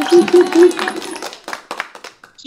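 The last acoustic guitar chord of a song ringing out and fading, under three short, loud voice shouts. Then a quick run of hand claps near the end.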